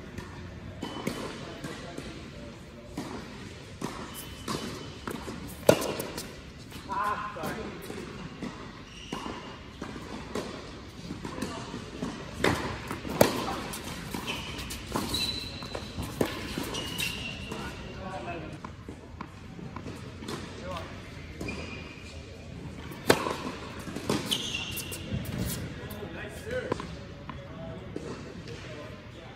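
Tennis rally on an indoor hard court: rackets striking the ball and the ball bouncing as sharp, echoing pops, the loudest about 6, 13 and 23 seconds in, with short high squeaks of sneakers between shots.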